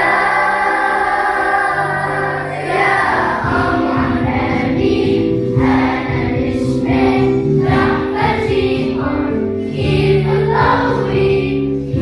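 Children's choir singing a song, with long held notes.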